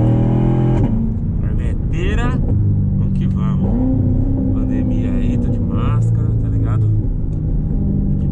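A C7 Corvette's V8 engine heard from inside the cabin while driving in second gear. Its note drops about a second in, rises again a little before the middle, then holds steady.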